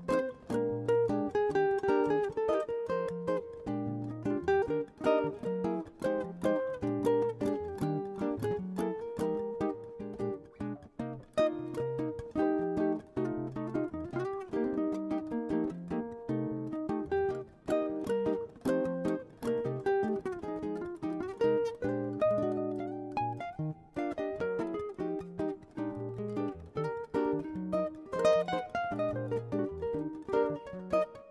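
Background music of plucked acoustic guitar, a quick run of picked notes over a steady low bass pattern.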